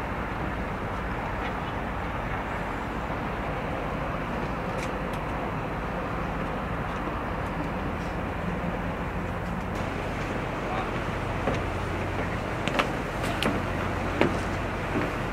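Steady background of low machinery drone and rushing noise, with faint voices mixed in; a few sharp clicks near the end.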